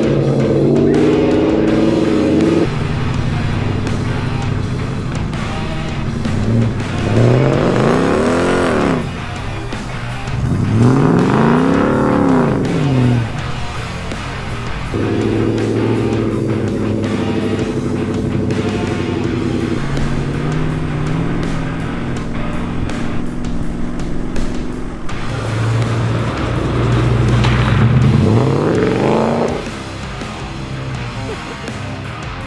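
Background music with steady held chords, over an off-road four-wheel-drive's engine revving up and dropping back three times.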